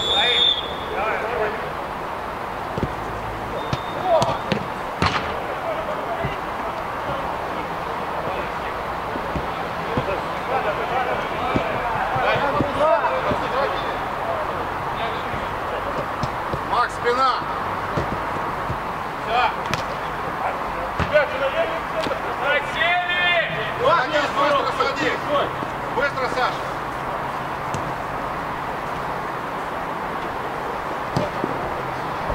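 Live sound of an amateur football game: players shouting to each other over a steady background noise, with sharp thuds of the ball being kicked now and then. A short high whistle blast sounds right at the start.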